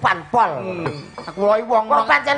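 A man's voice over a PA system, with light metallic clinking mixed in.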